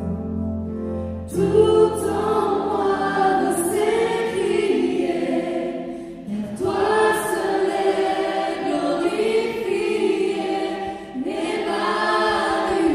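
Several voices singing a worship song together in long sung phrases. A low held note opens the passage, the voices come in about a second in, and new phrases start just after the middle and again near the end.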